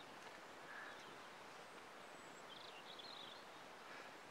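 Near silence: quiet outdoor ambience, with a few faint high chirps a little past halfway.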